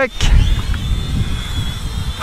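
Gusty wind buffeting the microphone in an uneven low rumble, with the faint, wavering high whine of an Eachine E58 mini quadcopter's propellers in flight.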